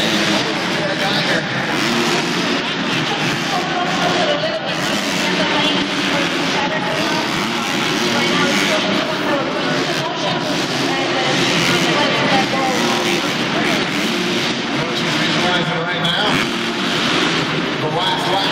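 Motocross dirt-bike engines running and revving on the track, their pitch rising and falling, heard through the reverberant arena over a loud public-address voice.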